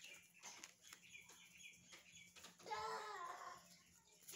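Faint soft clicks of tarot cards being handled, then, nearly three seconds in, a chicken gives one short wavering call lasting about a second.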